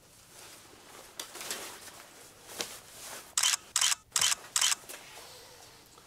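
Rustling of snow gear being handled, then four short, sharp rasps in quick succession a little past the middle.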